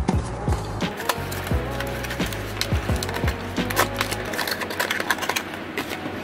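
Cardboard toy box being handled and opened by hand: scattered sharp clicks, taps and scrapes of paperboard. Background music with a deep beat runs underneath, and its low bass drops out about four seconds in.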